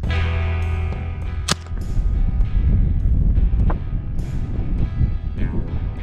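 Music playing throughout, over which a 1950s Winchester .22 rifle fires at least one sharp shot about a second and a half in, with a fainter crack just before four seconds.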